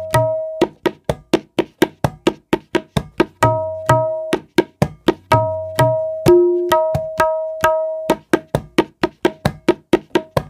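Tabla pair played by hand in a practice composition built on tirkit. Runs of quick, dry strokes about five a second alternate with ringing strokes on the treble drum (dayan) and low booming strokes on the bass drum (bayan).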